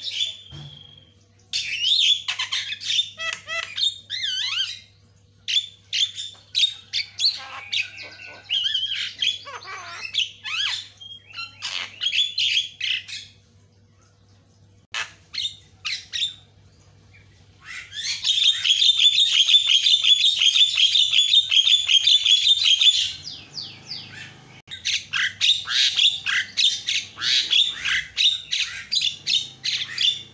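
Javan myna (jalak kebo) chattering in rapid bursts of varied squawks and whistled notes, broken by short pauses, with a long unbroken run of dense chatter about two-thirds of the way through.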